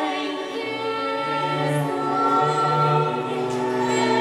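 Small choir of women's voices singing a sacred hymn in harmony, with low bowed cello notes held beneath from about a second in.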